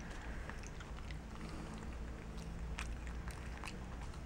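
Black-capped capuchin monkey chewing gummy bears close to the microphone: soft, irregular smacking clicks of the mouth and lips.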